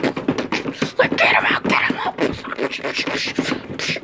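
A person making punching sound effects with their mouth: a fast string of pops, clicks and breathy hits, like beatboxing, for a flurry of blows in a toy fight.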